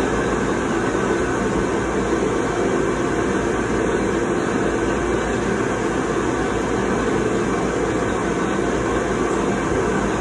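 Steady, loud rush of air from the blower that drives a soft-play frame's ball-suction tubes, with a faint steady hum under it.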